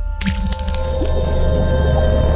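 Music sting for an animated logo: a deep bass drone with sustained tones, then a sudden splashy hit with a wash of bright noise just after the start that carries on over the drone.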